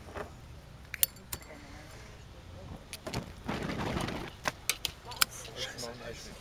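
Handling noise and several sharp clicks as a sticker is doused with lighter fluid and set alight, with a rushing noise of about a second just past the middle.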